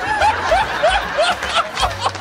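Audience laughing at a punchline, with one voice chuckling in a quick run of short, rising "ha"s over the crowd.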